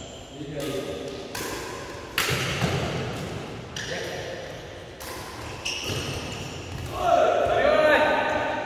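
Badminton rackets striking a shuttlecock in a fast doubles rally: sharp cracks about every second, ringing in a large hall. Near the end, a loud shout as the rally ends.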